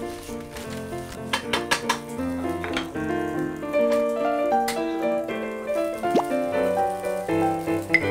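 Background music with a melody over fried rice sizzling in a frying pan, with a few sharp clinks of the utensil against the pan.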